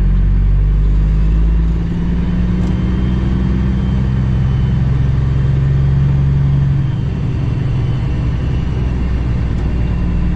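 Cummins ISX diesel engine of a 2008 Kenworth W900L semi truck running on the road, a steady low drone heard from inside the cab. Its level and pitch ease slightly about two seconds in and again around seven seconds.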